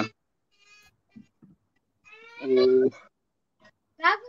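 Speech only: a man's drawn-out, hesitant "uh, yeah" about two seconds in, with silence on either side.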